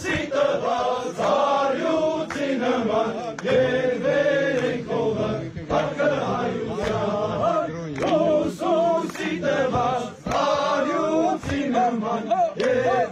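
A group of men singing a traditional Armenian song together in a chanting, choir-like unison, with a few sharp percussive hits scattered through.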